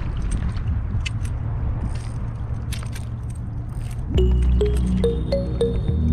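Wind rumbling on the microphone with a few faint clicks, then background music with a repeating plucked melody starts about four seconds in.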